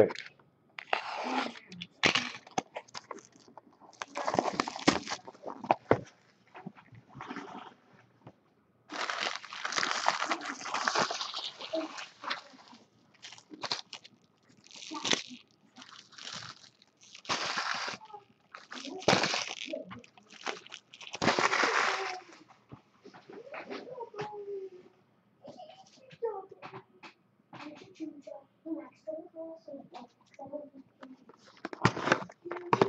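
Plastic wrapping on a box of trading cards crinkling and tearing in irregular bursts as the box is unwrapped. The bursts stop a little after twenty seconds in, leaving faint muffled sounds.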